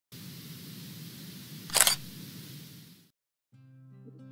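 Edited intro sound effect: a steady hiss with one sharp, loud snap a little under two seconds in, like a camera shutter. It cuts off about three seconds in. Acoustic guitar music starts just before the end.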